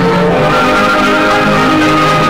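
Orchestral title music with several sustained notes held in layers, played through the hiss and crackle of an old 16mm film soundtrack.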